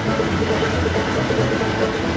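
Diesel locomotive engine running as the locomotive rolls slowly past, a steady low drone under a dense wash of mechanical noise.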